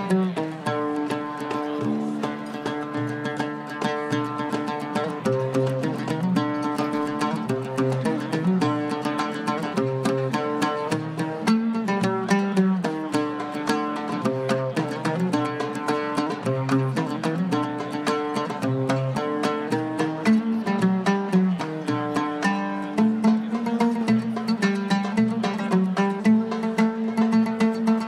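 Oud played solo, a plucked Arabic melody in quick runs of notes, with lower notes coming forward near the end.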